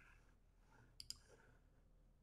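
Near silence with a faint low hum, broken about a second in by a quick pair of faint clicks.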